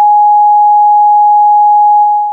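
A loud, steady electronic test tone: a single pure beep held at one pitch, the reference tone played with television colour bars.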